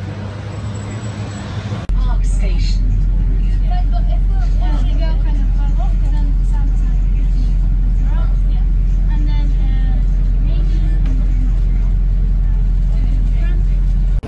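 Street traffic noise for the first two seconds, then a sudden switch to a loud, steady low rumble of a double-decker bus, heard from on board, with background voices over it.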